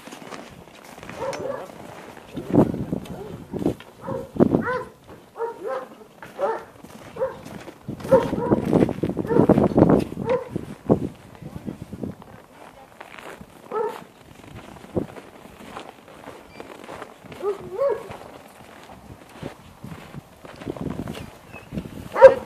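A farm dog barking repeatedly in short runs of barks, among people's voices.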